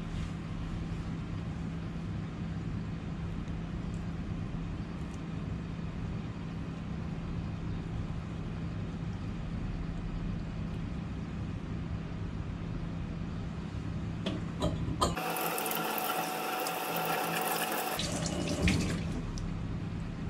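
A steady low kitchen hum, with about three seconds of running water from a tap near the end, bracketed by a few small clicks.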